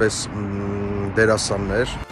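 A man's voice holding one long, level hesitation sound for about a second, then saying a few words, with a low rumble of street traffic underneath.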